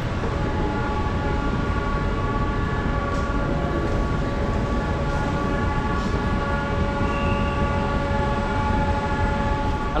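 Escalator running: a steady mechanical hum with a whine of several held tones over a low rumble, which stops suddenly near the end.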